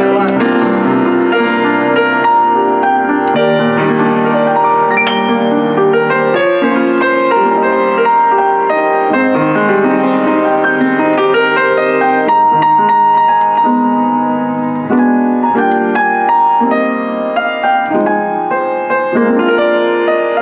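Compact 1975 Rogers upright piano being played continuously, a flowing piece with sustained chords and melody across the middle and upper range, a little softer near the end.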